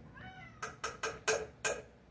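A spoon knocked about five times against a pan to shake butter off it, each a short sharp clink. Just before the knocks comes a brief high wavering squeal.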